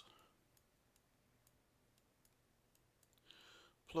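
Near silence, with a few faint, scattered clicks of a computer mouse as handwriting is drawn on screen, and a short breath near the end.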